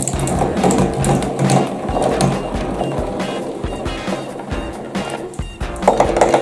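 Background music, with glass marbles rolling and clicking along a cardboard marble-run track.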